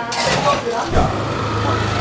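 Busy indoor noise, then street noise about a second in: a motor vehicle engine running with a steady low hum.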